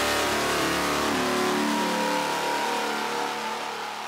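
A car engine running with a revving, pitched sound that eases down and fades away toward the end.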